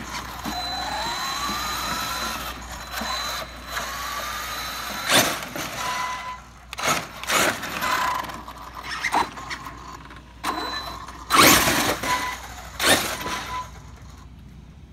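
Traxxas X-Maxx RC monster truck's brushless motor (a 4985 1650kv on a Hobbywing Max 6 ESC) whining, rising and falling in pitch as the throttle comes on and off, with several short loud bursts of tire noise on concrete, the loudest toward the end. The truck is running with one tire blown wide open.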